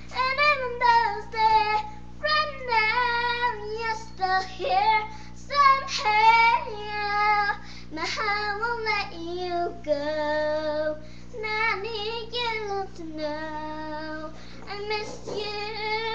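A young girl singing a slow ballad, her voice sliding between notes and holding some long notes in the middle stretch.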